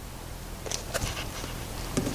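A few faint clicks and handling noises from a metal clamp being tightened by hand around a heat-wrapped exhaust manifold.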